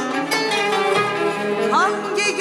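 A Turkish art music ensemble playing a short instrumental passage between sung phrases, with plucked kanun notes over sustained instrument tones.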